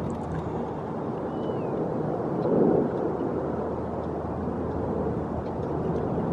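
Steady low rumble of outdoor background noise that swells briefly about two and a half seconds in, with one faint short high note near the start.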